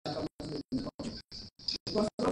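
A man speaking into the podium microphones. The sound is broken up by short dropouts about four to five times a second.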